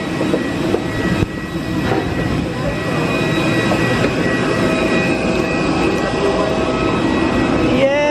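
Steady high whine of a parked airliner's engines running, over a broad rushing noise, growing a little louder about three seconds in. Voices murmur underneath.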